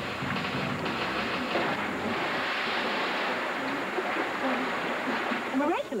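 Steady rushing of river water, a continuous hiss that grows fuller from about two seconds in.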